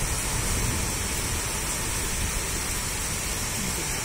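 Heavy rain pouring steadily, an even, unbroken hiss.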